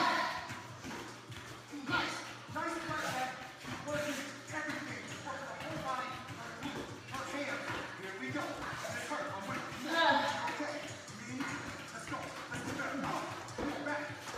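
Indistinct talking over background music.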